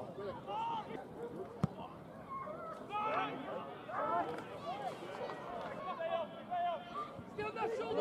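Distant, indistinct shouts and calls from footballers and onlookers during open play on a football pitch, with one sharp knock about one and a half seconds in.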